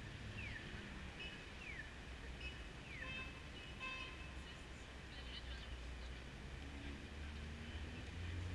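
Downtown street ambience: a low, steady rumble of traffic. Over the first three seconds a short falling chirp repeats about once every second or so.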